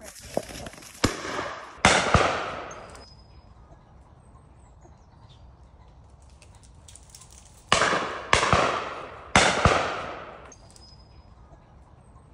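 Shotguns firing on a driven pheasant shoot. A few shots come in the first two seconds and three more come about eight to nine and a half seconds in, each a sharp bang with a long echoing tail.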